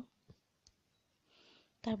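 Mostly quiet, with two faint short clicks and a brief soft hiss, before a woman starts speaking near the end.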